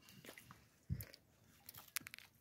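Faint scattered small clicks and one soft, low thump about a second in, over a quiet background.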